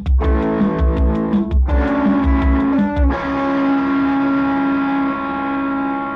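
Rock band music with distorted electric guitar over a driving beat. About three seconds in, the beat stops and a single guitar chord is held, ringing out.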